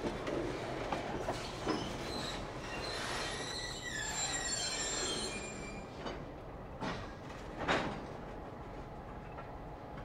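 Freight cars rolling slowly, with wheels squealing in several high tones for a few seconds, followed by a few sharp knocks, the last the loudest.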